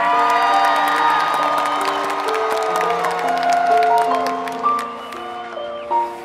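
Marching band opening its show with slow, held chords that move step by step, under crowd applause and cheering that thins out after the first few seconds.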